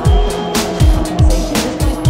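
Electronic dance music: a four-on-the-floor kick drum, about two beats a second, each kick falling in pitch, with noisy hi-hat and snare hits between the beats and held synthesizer tones.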